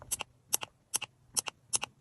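Plastic push button on an LED string-light battery pack clicking as it is pressed about five times in a row, each press a quick double click.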